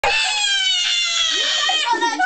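A girl's long, high-pitched shriek, held for nearly two seconds and slowly falling in pitch, with other voices breaking in during the second half.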